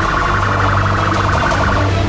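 Emergency vehicle siren sounding in a rapid, pulsing warble for about two seconds, over a steady low hum.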